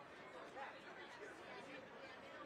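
Faint, indistinct chatter of several people talking in the background.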